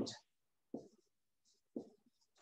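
Faint pen-on-paper writing: a couple of short strokes about a second apart.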